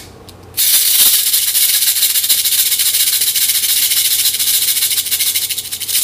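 A cabasa, a steel bead chain wrapped around a cylinder on a handle, shaken by hand in a fast, even rattle. It starts about half a second in, runs for about five seconds and stops near the end.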